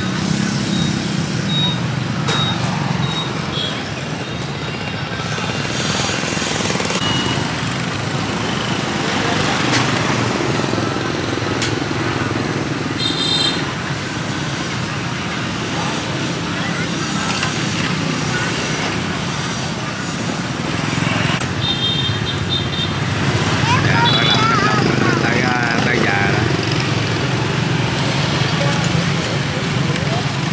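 Busy street ambience: a steady hum of motorbike and road traffic with people talking in the background, and a few short high beeps.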